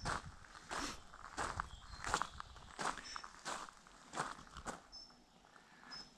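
Steady footsteps of a person walking at an easy pace, about three steps every two seconds, fairly faint.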